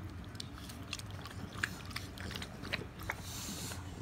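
English bulldog puppies lapping and licking from a stainless steel bowl: irregular wet clicks and smacks, with a brief hiss near the end.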